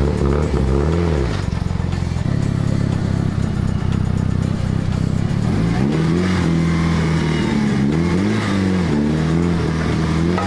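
Mitsubishi Lancer Evolution's turbocharged four-cylinder engine running at low speed with short throttle blips, its pitch rising and falling, as the car is eased up a trailer ramp. There are blips about a second in and several more in the last four seconds, with steadier running in between.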